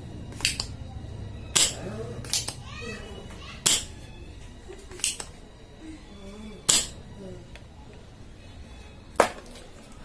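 Spring-loaded desoldering pump (solder sucker) being fired again and again at the joints of a circuit board. Each release of the plunger gives a sharp snap, about seven in all at uneven intervals, as molten solder is sucked off the pins.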